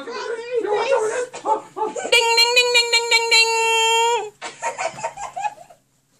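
A person's voice in a small room: unclear vocal sounds, then one long, high held shout of about two seconds that cuts off, followed by a few short vocal bits.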